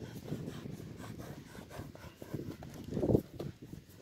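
Horses walking in soft sand close by, hooves thudding dully and unevenly, with one louder, short low sound right at the microphone about three seconds in.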